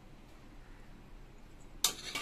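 Quiet room tone, then about 1.8 seconds in a single sharp metallic clink with a short ring: a steel plate knocking against an aluminium cooking pot.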